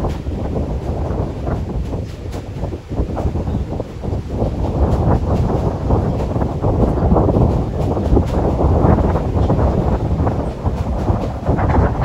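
Wind buffeting the microphone: a loud, uneven rumble that dips briefly and grows stronger in the second half.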